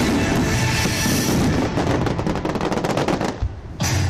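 A rapid run of crackling fireworks bangs from a display, mixed with loud rock music with drums. A brief drop in level comes just before the end.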